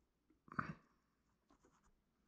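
Fingers pressing and rubbing polymer clay onto a sculpture: one short scraping rub about half a second in, then a few faint ticks.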